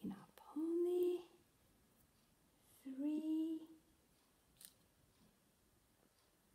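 A woman's voice making two short hums, one about half a second in and one about three seconds in, each under a second long, with a faint click near the end.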